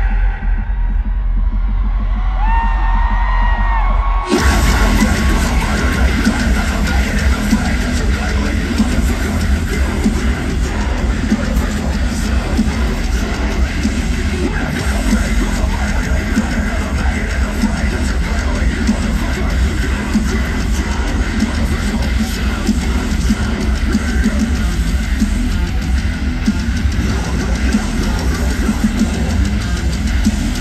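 Live metalcore band through a festival PA, heard from the crowd. It opens muffled, with the highs cut off and a few short sliding synth-like tones, then distorted guitars and drums crash in at full volume about four seconds in.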